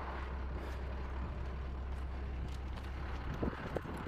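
Box truck's engine idling: a steady low rumble, with a few faint light knocks about three and a half seconds in.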